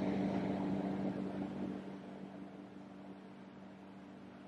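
A steady low hum with a hiss over it that slowly fades away.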